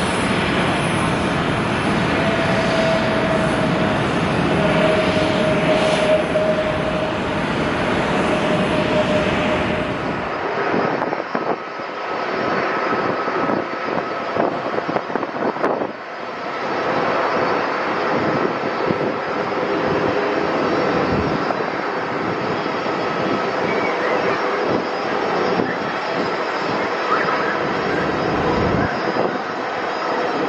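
Jet airliner engines. First a China Airlines Airbus A321neo runs on the runway with a steady fan tone that slowly falls in pitch. About ten seconds in the sound changes suddenly to a twin-engine widebody jet on final approach, its engine noise carrying a faint higher whine.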